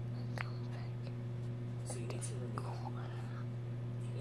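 Soft whispering over a steady low electrical hum.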